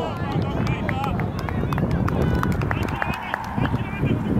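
Distant shouts and calls from players and spectators, under a heavy rumble of wind on the microphone, with a few sharp clicks scattered through.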